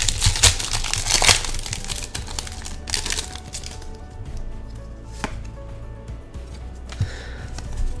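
Foil trading-card booster pack wrapper crinkling as it is torn open, with dense crackling for the first three seconds or so. The crackling then dies down to quieter handling of the cards, with a couple of single clicks.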